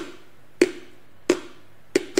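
A steady beat of sharp percussive clicks, four of them about two-thirds of a second apart, each with a short ring.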